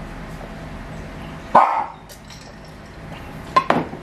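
A single short, loud bark-like sound about one and a half seconds in, then two sharp clinks near the end as drinking glasses are set down on the table.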